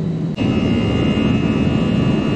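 Jet airliner engines heard inside the passenger cabin: a steady low hum while taxiing, then a sudden cut about half a second in to louder engine noise with a steady high whine during the climb just after takeoff.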